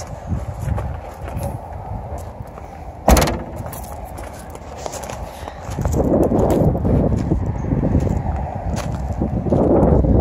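Rear liftgate of a 2011 Chevy Suburban slammed shut once, about three seconds in, the loudest sound here. From about six seconds on, footsteps on gravel and wind on the microphone.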